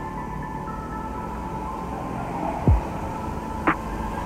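Background music holding sustained tones. About two and a half seconds in comes a deep sound that drops sharply in pitch, followed by a brief burst near the end.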